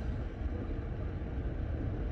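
Car air conditioning blowing close to the microphone inside the car cabin: a steady rumbling rush that does not change.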